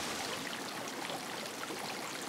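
Soft, steady water ambience of a steaming hot-spring pool: a gentle, even trickle and hiss of water.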